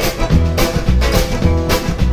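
Live band playing an instrumental stretch of a rockabilly-style train song: hollow-body electric guitar, accordion and drums with a steady, driving beat, no vocals.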